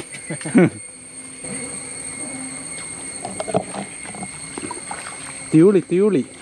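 A man's voice in short loud calls at the start and again near the end. Between them the riverbank is quiet except for a steady, high-pitched insect drone.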